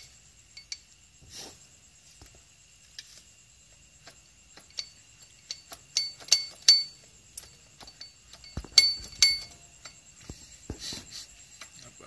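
Metal clinks and taps of steel starter gears and the magneto flywheel rotor of a Kawasaki KLX 150 being fitted by hand onto the crankshaft, meshing with the starter gear. The clicks are sparse at first, then come in two clusters of louder, briefly ringing clinks past the middle.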